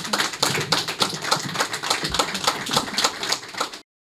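Audience applauding, many hands clapping at once. It cuts off abruptly near the end.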